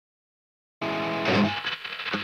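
Ibanez RGA121 Prestige electric guitar starting suddenly about a second in with a ringing chord, followed by picked notes.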